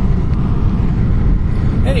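A loud, steady low rumble of background noise that does not change through the pause, with no speech over it.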